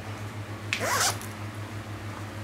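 Zipper on a small fabric crossbody bag pulled once, a quick zip lasting under half a second, about three-quarters of a second in, over a steady low hum.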